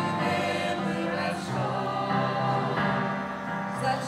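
Congregation singing a hymn together, many voices holding long notes that change every second or so.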